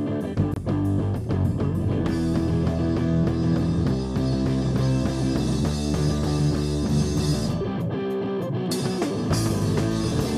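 Rock band playing live on electric guitar, bass guitar and drum kit. The full band comes in about two seconds in, and there is a short break in the top end at about eight seconds before the band comes back in.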